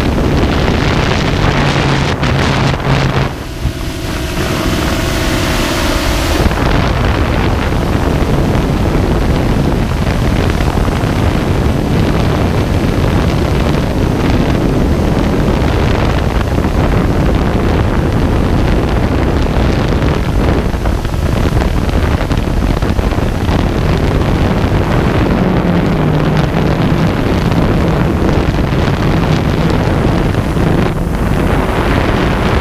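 Storm multirotor drone's motors and propellers running, heard through a GoPro mounted on the drone, with heavy wind noise buffeting the microphone. The sound shifts a few seconds in, around lift-off, then stays a dense, steady rush as the drone flies.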